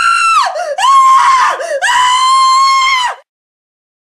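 High-pitched screaming in three long cries, each holding its pitch and then falling away at the end. The screaming cuts off suddenly just after three seconds in.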